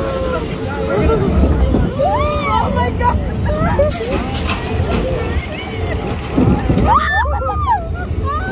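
Riders on a fairground roller coaster shrieking and laughing, voices swooping up and down in pitch, with bursts around two seconds in and again near the end. A steady low rumble from the moving ride runs underneath.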